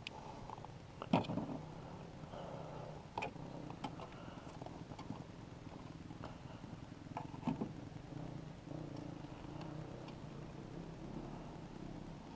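Faint handling sounds at a quad's throttle position sensor: a few sharp clicks and taps of a screwdriver and multimeter probes on the sensor and its connector, the loudest about a second in, over a steady low hum.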